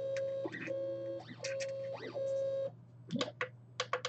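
Monoprice MP Mini Delta 3D printer's stepper motors driving the delta carriages: a steady whine, broken several times by short rising-and-falling pitch sweeps as the moves speed up and slow down, stopping about two-thirds of the way through. A few sharp clicks follow near the end.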